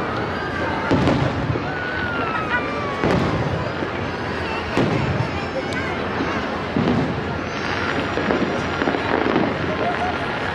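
Aerial fireworks shells bursting in the sky: about six booms, a second or two apart.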